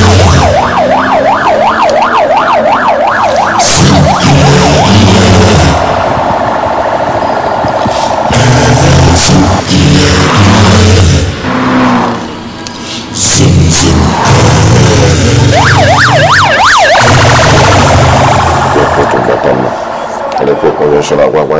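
A siren yelping fast, rising and falling about three to four times a second, for the first few seconds and again briefly about three quarters of the way through, over loud background music with a heavy bass.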